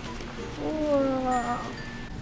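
One drawn-out, voice-like call lasting about a second, starting about half a second in, rising briefly and then falling slowly in pitch, over soft background music.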